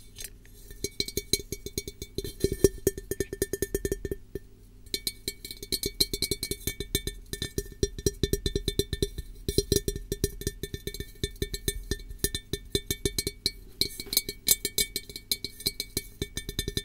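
Fast, irregular tapping on a hard object that rings, each tap leaving a faint clear chime, with a short pause about four seconds in.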